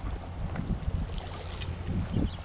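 Wind buffeting the microphone in a steady low rumble, with a few faint splashes and rustles as a hooked black bream is hauled out of the water up a grassy bank.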